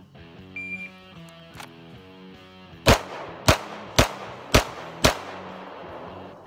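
Shot timer start beep, then five handgun shots about half a second apart. The first shot comes a little over two seconds after the beep, and the five span about two seconds. Guitar music plays underneath.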